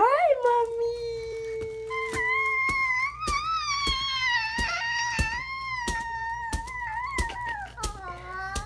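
A baby's long, high-pitched vocalizing, held in drawn-out, fairly steady notes for several seconds. Light crackles run through it as she moves on the paper of the exam table.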